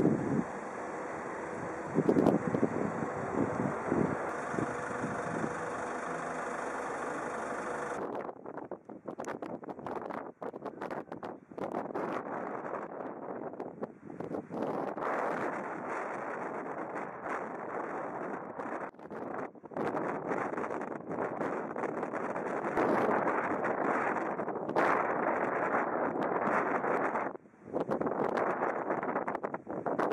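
Wind buffeting the camera's microphone. A steady hiss for the first eight seconds, then uneven gusts that swell and cut out repeatedly.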